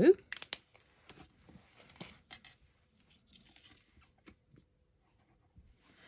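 Scattered light clicks and paper rustles of card cut-outs being lifted and a fine-tip glue bottle being handled on a cutting mat, mostly in the first half.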